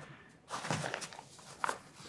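Handling noise as a microphone is taken out of a soft fabric pouch: rustling and light knocks starting about half a second in, with a couple of sharp clicks, the last near the end.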